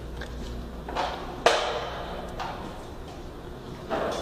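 A few sharp knocks, the loudest about a second and a half in, with a short ring after it.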